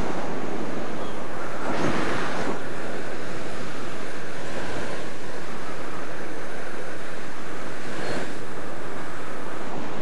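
Steady rush of wind over the microphone of a skydiver flying under an open parachute canopy, with a brief louder swell about two seconds in.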